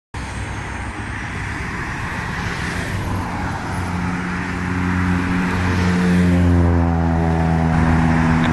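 Learjet 35 business jet's two Garrett TFE731 turbofan engines running as it taxis and turns, the jet noise growing steadily louder. A deep, steady hum joins in about halfway through.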